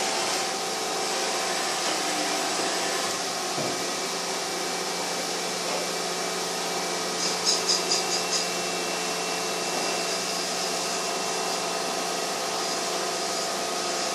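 CNC machining centre running, its table traversing on the axis drive with a steady machine hum and whine. A short run of light ticks comes about halfway through.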